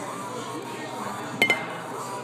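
Two quick clinks of a metal bar spoon against a glass shot glass about a second and a half in, each ringing briefly at one high pitch.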